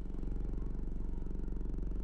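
Car engine running steadily, a low even hum heard from inside the moving car.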